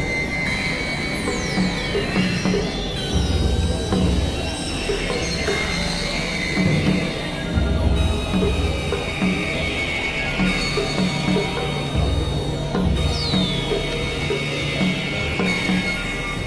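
Experimental electronic synthesizer music: a dark drone with held high tones and a low bass pulse every few seconds. High falling sweeps come about a second in and again near the end.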